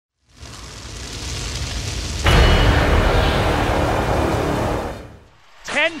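Intro sound effect for an animated title: a rising rushing noise, then a sudden loud boom about two seconds in that rumbles on for a few seconds and fades away near the end.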